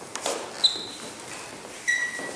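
Two short ringing pings, like small metal pieces clinking, the first about half a second in and a lower one near the end, over faint shuffling footsteps on a wooden floor.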